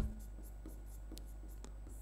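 Faint light ticks and scratching of a stylus writing on an interactive touchscreen board, over a low steady hum.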